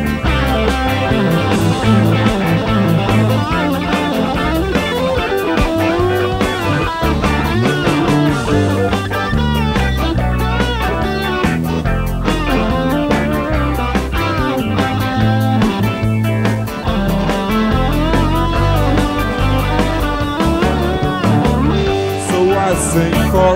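Live rock band playing an instrumental break: an electric guitar lead with gliding, bent notes over bass and drums.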